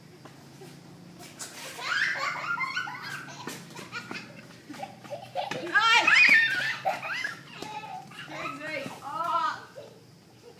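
A toddler and a woman laughing and squealing without clear words, the loudest and highest squeal coming about six seconds in.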